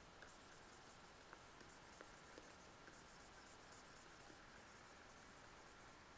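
Faint, repeated scratching of a pen stylus stroking over a graphics tablet, above near-silent room tone.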